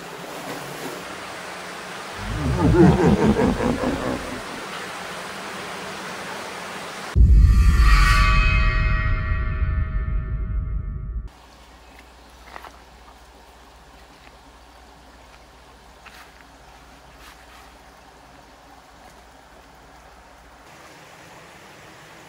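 A horror-style music sting: a rising sweep, then a loud deep hit with falling ringing tones that cuts off abruptly about eleven seconds in. After it comes the soft steady rush of a shallow creek, with a few light knocks.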